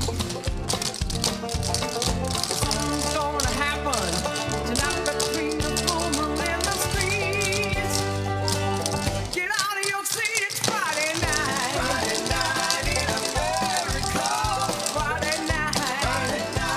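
Clogging taps on a team's shoes clattering in rapid, dense rhythm on a wooden stage floor, over upbeat recorded music. A little past halfway, the music's bass drops out for about a second while the tapping goes on.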